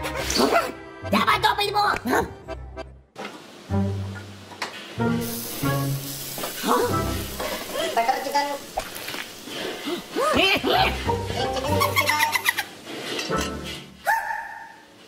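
Cartoon soundtrack: background music under wordless character vocalisations, exclamations and grunts, with a brief break in the sound about three seconds in.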